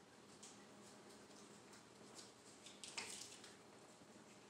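Near silence: room tone, with a few faint ticks and one brief, louder click-and-rustle about three seconds in.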